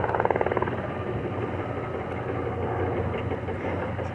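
A steady low engine hum, with a rapid buzzing pulse in the first second or so.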